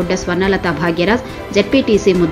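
A man's news voice-over in Telugu, talking without pause over background music.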